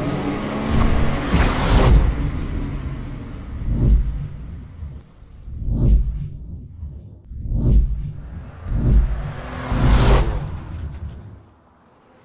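Produced intro sound effects: a deep rumble and a string of whooshes that swell about every one to two seconds, dying away near the end.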